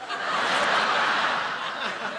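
Audience in a large hall bursting into laughter, swelling quickly and fading toward the end.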